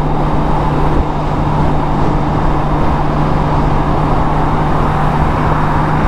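Honda Gold Wing touring motorcycle cruising at highway speed, heard from the rider's seat: a steady low engine drone under a constant rush of wind and road noise.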